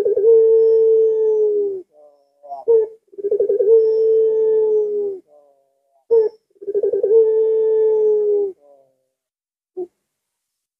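Puter pelung (Barbary dove) cooing. Three long, deep, steady coos of about two seconds each, each led in by a short clipped note and coming about every three seconds, with one more short note near the end.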